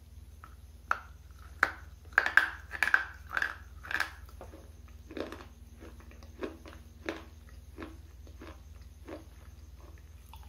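Close-miked bites and chewing of a hard, dry black bar. There are loud, sharp crunches for the first four seconds or so, then quieter crunching chews about once a second.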